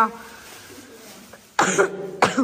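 A person coughs once, a short, sudden cough about one and a half seconds in, with another following just after.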